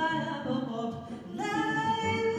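Live jazz vocal: a woman sings with sparse backing. About a second and a half in, a new phrase starts on a long held note that slowly rises in pitch.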